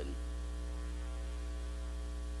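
Steady electrical mains hum picked up by the microphone and recording chain: a constant low hum with a faint buzz of higher overtones.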